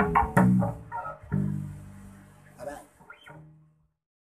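Electric bass guitar played with the fingers: a couple of plucked notes, then a last low note held and left to ring, fading away before the sound cuts off just short of the end.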